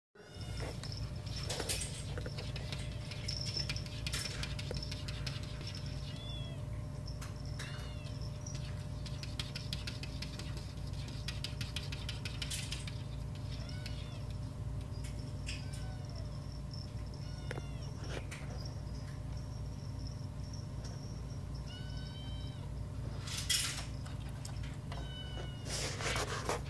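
Orange tabby kittens mewing, about half a dozen short high meows spread through, while their paws and claws tap and scratch at a glass pane in sharp clicks. A steady low hum sits underneath.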